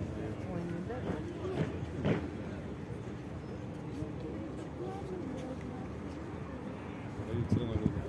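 Indistinct chatter of several people talking in a crowd outdoors, with a brief sharp knock about two seconds in.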